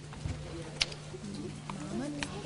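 A steady low hum from the sound system, with a few small knocks, and from about a second in a soft low voice murmuring into the microphone.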